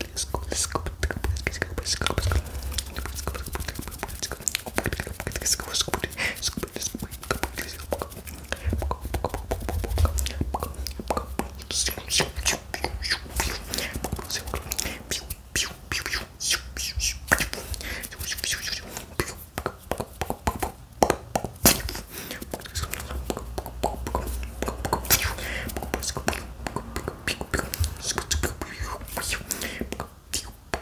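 Close-miked ASMR mouth sounds and whispering without clear words: a fast, irregular stream of clicks and breathy bursts, with hands moving and rubbing near the microphone.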